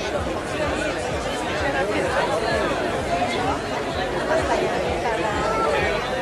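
Chatter of a large marching crowd: many voices talking at once in overlapping, indistinct conversation, at a steady level.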